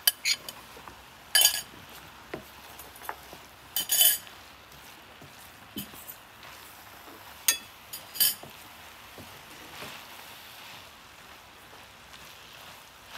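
Wooden spatula stirring a thick mince-and-vegetable mixture in a metal frying pan, with a few short clinks and scrapes against the pan, the loudest about a second and a half, four, and seven and a half seconds in.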